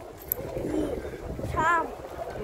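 A brief high-pitched voice with a wavering pitch near the end, over low background rumble.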